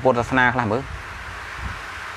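A man speaking Khmer, a dharma talk, breaking off a little under a second in; the rest is a pause with only a steady background hiss.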